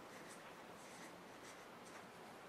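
Faint strokes of a felt-tip marker drawing on a flip-chart paper pad, over quiet room tone.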